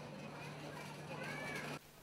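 Faint pedestrian-street ambience with a steady low hum, and a brief high cry that rises and falls about one and a half seconds in; it all cuts off just before the narration starts.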